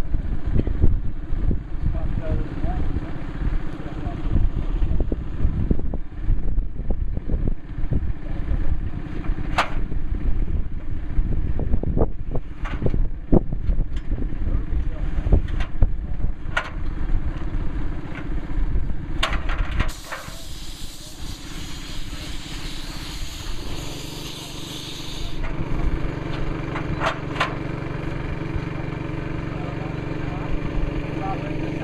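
Wind buffeting the microphone, with low voices of a group and scattered sharp knocks. About two-thirds of the way through, a hiss runs for some five seconds, then an engine hums steadily.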